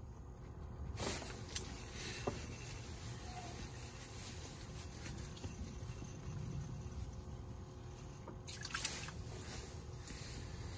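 Faint clicks and light handling noises of fishing line and gear being worked free of a tangle, over a low steady background hum. A few small clicks come about a second in and again near the end.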